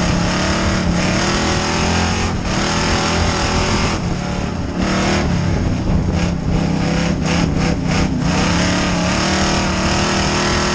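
Pure stock dirt track race car's engine heard from inside the cockpit, running hard at racing speed. The engine note wavers in pitch and falls back briefly about four seconds in and again near eight seconds.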